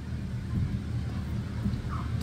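A steady low rumble, with no other clear sound.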